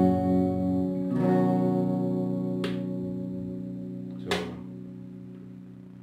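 Clean electric guitar tone from a modified Squier Jazzmaster through a Marshall MG30FX amp, with the fuzz pedal off. One chord is struck at the start and another about a second in, left to ring and slowly fade, with a couple of small clicks along the way.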